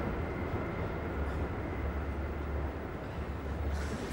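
Low, steady rumble of a car running, with engine and road noise.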